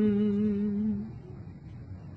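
A man's singing voice holding one long, level note for about a second, then trailing off into faint low background noise.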